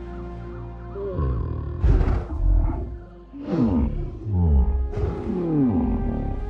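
Kong, the giant ape, making several low calls that bend in pitch, about a second in and again in the second half, over film score music with sustained notes.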